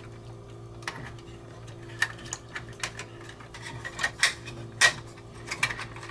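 Hard plastic panels of a Studio Cell Unicron transforming figure being handled and pressed into place: a scattered run of light clicks and taps at irregular intervals, over a steady low hum.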